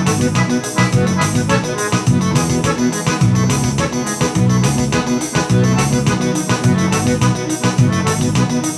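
Piano accordion playing a tune on its right-hand piano keys over a steady, rhythmic bass-and-chord accompaniment from the left-hand bass buttons.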